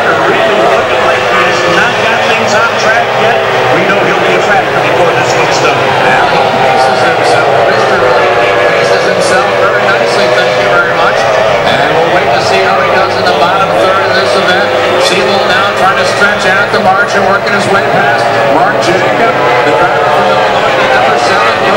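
Racing outboard engine of a Formula 1 tunnel-hull powerboat running flat out, heard from the cockpit, its pitch wavering up and down as the boat throttles through the turns.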